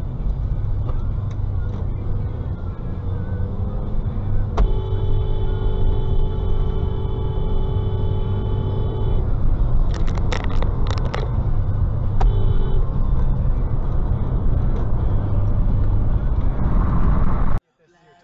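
Steady road and engine rumble inside a moving car, with a car horn held in one long blast of about four and a half seconds starting about four seconds in, then a cluster of short sharp sounds around ten seconds and a second, brief horn blast about twelve seconds in. The sound cuts off suddenly just before the end.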